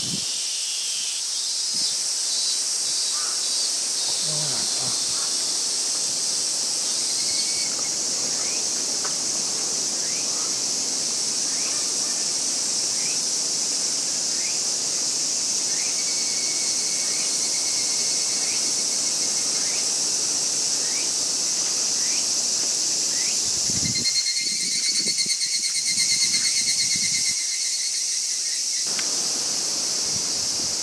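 Steady high-pitched chorus of insects in woodland. Near the end a second, rapidly pulsing insect call joins in for a few seconds.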